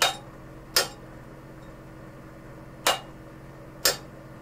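An exhaust diverter solenoid clicking as it is switched on and off from a battery: four sharp clacks, in two pairs, as the plunger pulls in and snaps back. Strong and regular, it would appear to be working normally, which points, perhaps, to a restriction in the diverter valve itself.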